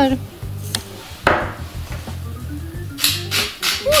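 Hand-held spice mill being twisted over a bowl, grinding in short dry bursts: one a little over a second in, then a quick run of four or five near the end, over steady background music.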